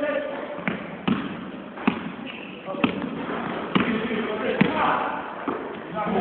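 Basketball bouncing on a sports-hall floor during play, about six thumps at uneven intervals, with players' voices in the hall.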